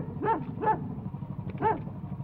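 A dog barking: four short barks, three in quick succession and then one more after a pause, over a steady low hum.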